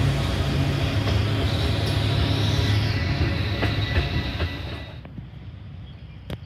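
Freight train passing close by, with diesel locomotives and tank cars: a loud steady low rumble of engines and rolling wheels, with a few sharp clicks late on. The sound drops away suddenly about five seconds in, leaving a much quieter background.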